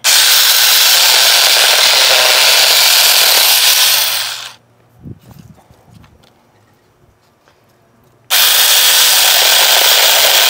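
Alloyman 6-inch battery-powered mini chainsaw running and cutting through a small branch, its motor winding down about four seconds in. After a few seconds of quiet it starts up again abruptly near the end.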